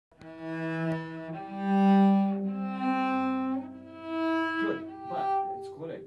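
Cello played with the bow: a slow line of sustained notes that climbs in pitch, the notes joined by short slides as the left hand shifts up the fingerboard.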